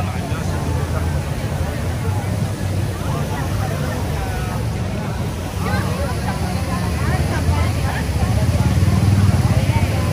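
Busy city street ambience: a steady low rumble of traffic under scattered voices of passers-by, growing louder in the second half.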